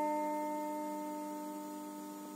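Electric guitar note ringing out and fading steadily away after being plucked.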